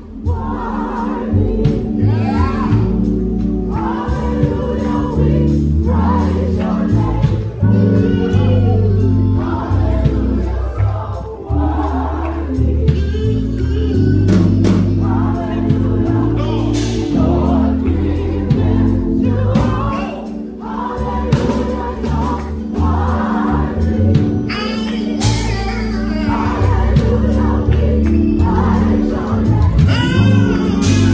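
Gospel choir singing together in full voice over a sustained bass line, with a regular beat running under it.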